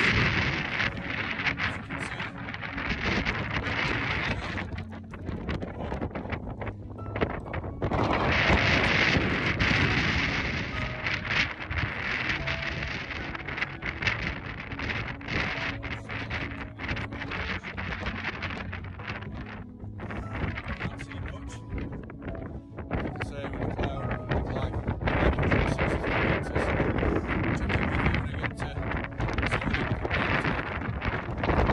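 Wind buffeting a phone's microphone in gusts, swelling strongly about eight seconds in and again near the end.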